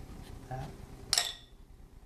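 A glass baking dish clinking once, a sharp knock with a short high ring, about a second in.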